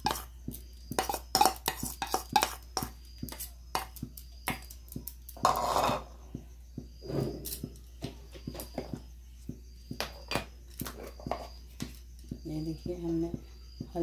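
Metal spoon scraping and clinking against stainless steel bowls as a thick paste is scraped out: a run of short, irregular clicks and scrapes, with one longer scrape about five to six seconds in.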